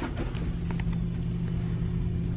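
Steady low machinery hum in a ship's corridor, with a few faint clicks.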